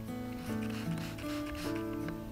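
Soft background music of held notes that change a few times, with short rustles as plant leaves are lifted and rubbed by hand.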